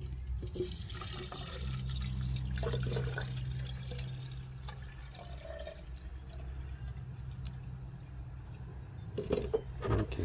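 Diluted cresol soap solution pouring in a steady stream from the spout of a plastic watering can into a small cup, filling it; a few handling knocks near the end.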